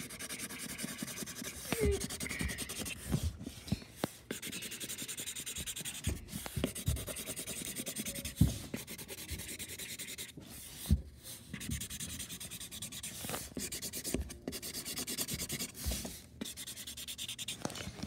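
Marker scribbling rapidly back and forth on cardboard, colouring in checkerboard squares, with a few dull knocks against the box.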